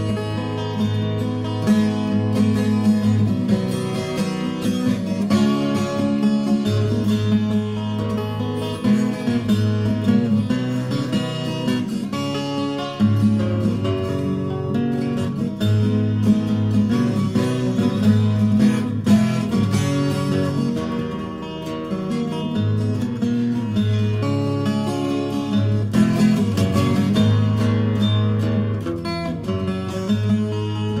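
Instrumental break in a folk song: acoustic guitar played steadily, with no singing.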